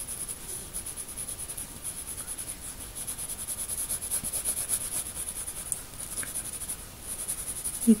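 Graphite pencil shading on drawing paper: quick, repeated back-and-forth rubbing strokes, a few a second. A constant high-pitched pulsing tone runs underneath.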